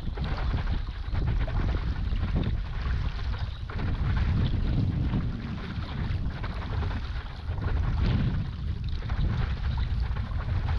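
Water rushing and splashing along and behind a moving stand-up paddleboard, with gusty wind buffeting the microphone. The sound swells and eases every few seconds.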